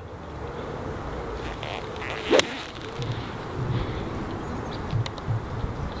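A golf nine iron striking the ball: one crisp click about two seconds in, over faint steady outdoor background noise.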